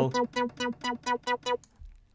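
Ableton Live Analog synth patch of detuned saw-wave oscillators in unison, one pitched an octave up, with the sub-oscillator level just raised to about half. It plays a quick run of short repeated notes on one pitch, about five a second, stopping about a second and a half in.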